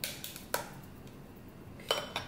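A small glass clinking three times against the stainless-steel rim of an insulated tumbler as an espresso shot is poured from it: once at the start, once about half a second in, and once near the end with a brief ring.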